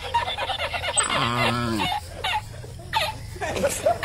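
People laughing and talking in snatches, with one drawn-out voiced sound lasting just under a second, about a second in.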